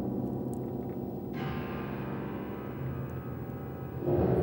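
Background score of long, slowly fading gong-like ringing tones, with a brighter ringing layer coming in about a second and a half in.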